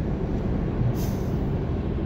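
Steady road and engine noise inside the cabin of a moving car, with a brief hiss about a second in.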